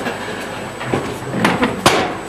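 A few knocks and bumps over room noise as people shift about at a table, the loudest a sharp knock near the end.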